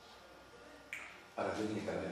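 Quiet room tone, broken about a second in by a single short, sharp click, and followed by a man starting to speak.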